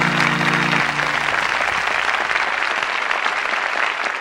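Audience applause, a dense steady clapping, with the last held low chord of the trot backing track dying away about a second in.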